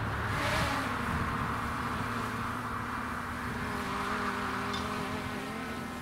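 A small aircraft flying overhead makes a steady droning hum whose pitch wavers slightly. The hum slowly fades.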